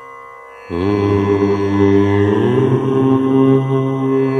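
A deep voice chants a long, resonant 'Om', starting just under a second in and held steady. Its tone changes about halfway through as the open vowel closes toward the hummed 'm'. A steady drone sounds underneath.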